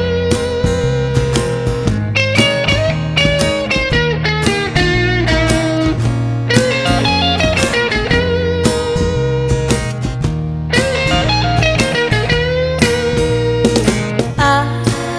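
Electric guitar playing a lead line with bent, wavering notes over a strummed acoustic guitar, in an instrumental break of a country song.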